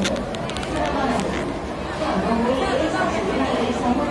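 Indistinct chatter of several people talking around, with a few light clicks in the first second.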